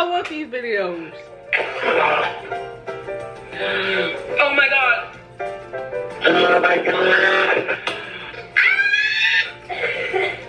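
A man's voice crying out in several drawn-out bursts, each about a second long, reacting to the burn of spicy noodles, over background music.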